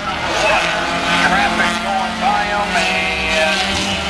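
Four-cylinder dash-series race cars running on the track under caution, a steady engine sound with voices over it.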